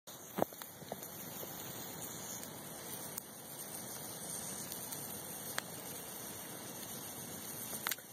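Wood campfire burning with a steady hiss and a few sharp pops, a loud one about half a second in and another near the end; the logs are wet from rain.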